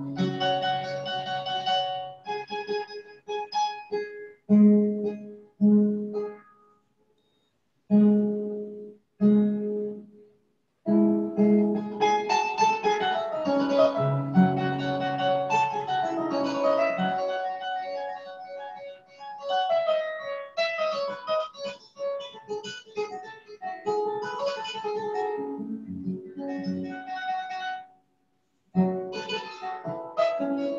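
Kora, the West African calabash harp, played solo: plucked melodic phrases of bass and treble notes. Short pauses break the playing in the first eleven seconds, then it runs on in a steady flowing pattern, with one more brief pause near the end.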